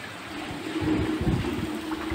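Rain falling steadily. About a second in, low rumbling handling or wind noise comes in on the phone microphone, and a steady low hum runs alongside.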